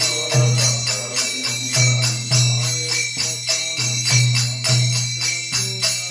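Kirtan: a pair of small hand cymbals (kartals) struck in a steady rhythm, each stroke ringing, while a man's voice sings a devotional chant in long phrases.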